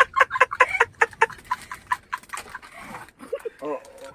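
A man laughing hard in a fast run of short, cackling bursts that fade away over the first two or three seconds, followed by a few voiced 'oh oh' sounds near the end.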